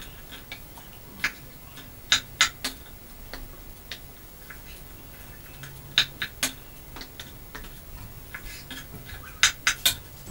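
Kitchen knife slicing a peeled cucumber into strips on a wooden cutting board: sharp taps of the blade on the board at irregular intervals, several in quick runs of three.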